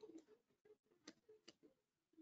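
Faint, separate clicks of computer keyboard keys being typed, a few taps with the sharpest about a second and a second and a half in.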